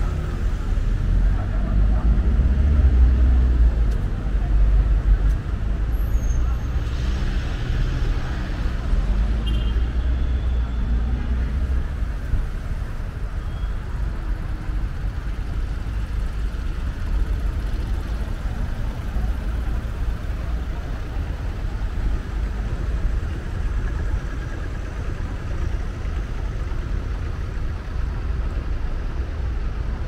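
City street traffic: motor vehicles running past close by, with a heavy low engine rumble for the first ten seconds or so that then eases into a steadier traffic hum.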